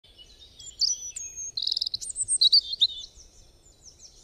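Songbirds chirping and singing in quick, high whistled phrases, with a fast trill about a second and a half in. The calls thin out and fade near the end.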